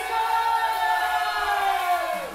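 A singer in a live soul band holding one long note that slides down in pitch near the end, with the bass and drums dropped out underneath.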